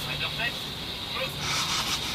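Faint voices talking over steady background noise, with a thin, steady high-pitched tone running under them.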